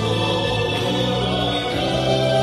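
Music: a man singing a Vietnamese song into a microphone over a backing track, holding long notes.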